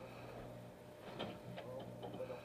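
Faint steady low hum of the fishing boat's machinery, fading about two-thirds of a second in, with a few light sharp ticks in the second half.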